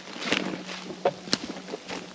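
Footsteps crunching through dry leaf litter and twigs on a forest floor, a few sharp, irregular crunches and snaps over a rustling background.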